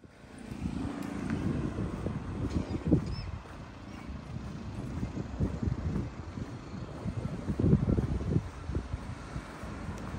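Outdoor street ambience: a low traffic rumble with wind buffeting the microphone, the gusts loudest about three seconds in and again near eight seconds.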